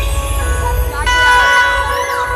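Loud amplified music from a procession sound system, with sustained tones over a heavy bass that drops away near the end.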